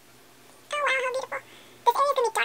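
Two short, high-pitched voiced calls: the first lasts about half a second, and the second starts just before the end.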